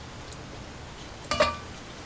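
A single short clink about a second and a half in, a ladle knocked against kitchenware as it is lifted from the jar of syrup and set down, over a quiet kitchen background.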